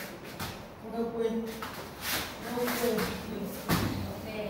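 Scuffling of bare feet and bodies on a rubber floor mat during a standing grapple, with a few short vocal sounds from the wrestlers and a heavier thump near the end.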